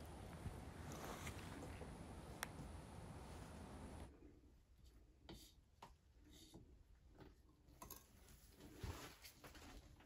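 Near silence: a faint steady hiss for about four seconds, then a few faint soft ticks and taps.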